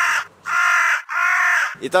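A man shouting three short cheer-like calls into a handheld microphone, each about half a second long, with no crowd cheering after them.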